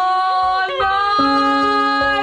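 A sung voice holding long notes. It steps up a little in pitch just before halfway, and a second, lower note joins it a little after halfway.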